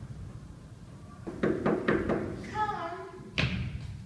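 A few dull thumps and knocks in quick succession, then a short child's voice falling in pitch, then one sharp thump near the end.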